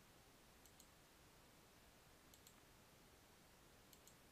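Near silence with three faint computer mouse clicks about a second and a half apart, each a quick double tick of press and release, as checkboxes are ticked one by one.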